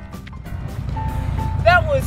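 Diesel engine of a Case crawler excavator running, a low rumble that grows louder while background music fades out early on. A voice begins near the end.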